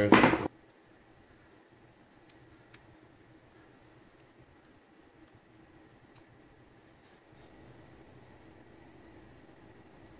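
Quiet room hum with a few faint, short clicks from needle-nose pliers picking leftover cable and housing scraps out of a Shimano 105 ST-5500 shifter's cable hole.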